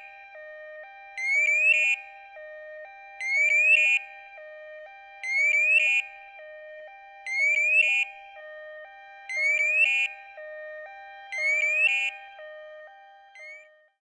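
Evacuaid emergency bracelet sounding its man-down alarm in emergency mode: a loud rising whoop repeated about every two seconds, seven times in all, with a quieter two-note tone alternating underneath. It fades out near the end.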